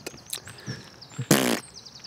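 A man's short raspy vocal buzz, lasting about a quarter second a little past the middle, made in a pause while he hunts for a word. Faint bird chirps sound high in the background.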